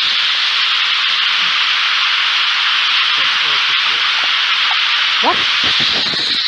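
Loud, steady static hiss from a ghost radio (spirit box) app. Faint, broken fragments of voice sound through it now and then.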